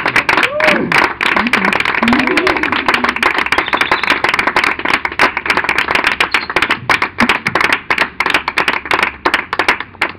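Small audience clapping by hand, with a few voices calling out in the first couple of seconds. The clapping grows sparser near the end.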